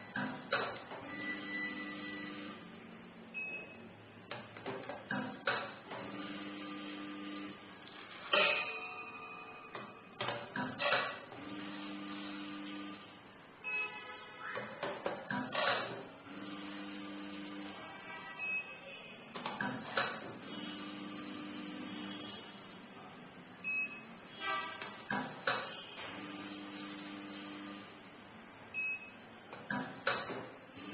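Automatic tea weighing and filling machine dispensing dose after dose about every five seconds. Each cycle is a steady low hum for about a second and a half, followed by clicks and a brief rattle as the weighed tea leaves drop from the chute into a plastic tub.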